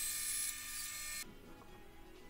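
Bandsaw running, a steady motor hum with a high hiss from the blade, which cuts off abruptly a little over a second in and leaves near quiet.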